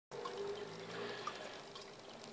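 Faint, steady water trickle from a running aquarium filter, with a low hum under it.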